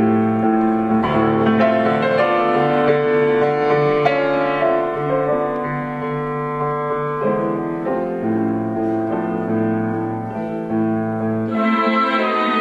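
Solo piano playing a slow theme in sustained chords over a low bass note that keeps returning, a repeated-note harmonic pedal.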